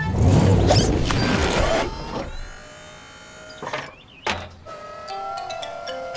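Cartoon sound effects for a fire truck's ladder boom: a loud rushing rumble for about two seconds, then quieter motor whirring with two short swishes around the middle, over background music.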